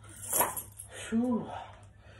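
A man breathing out hard, then a short voiced groan about a second in, winded from a set of overhead resistance-band presses.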